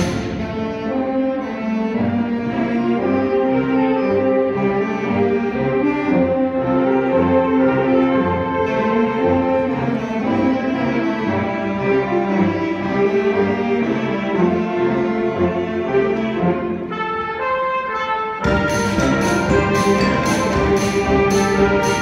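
Concert wind band playing: sustained chords from saxophones and brass. Near the end, after a brief thinner passage, regular percussion strikes come in under the band.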